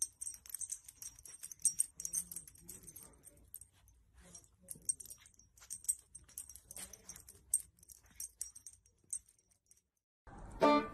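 A puppy nosing and tugging a fleece blanket over a sleeping baby: faint, irregular rustling and small clicks, thinning out near the end.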